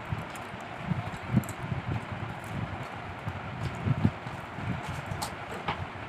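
People eating rice by hand from steel plates: soft, irregular chewing and handling thumps, with small sharp clicks of fingers and food on the metal plates, over a steady background hiss.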